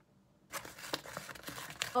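A flat cardboard mailer being opened and its contents pulled out: rustling and crinkling of card and paper with small clicks, starting about half a second in.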